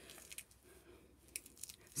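Faint rustling with a few soft, short clicks as a fabric wig grip cap is pulled and adjusted around the head.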